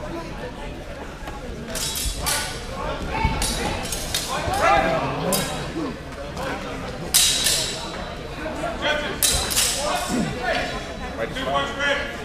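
Steel training swords clashing during a fencing exchange: a string of sharp metallic clashes and rings, several in quick pairs, with voices between them.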